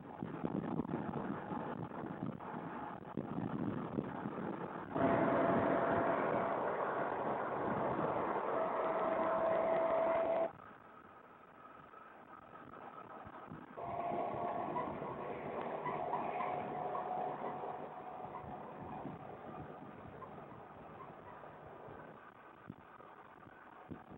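Engine and road noise of a military convoy vehicle on the move, heard from on board, with a steady whine over it in two stretches. The sound jumps louder about five seconds in and drops suddenly about halfway through.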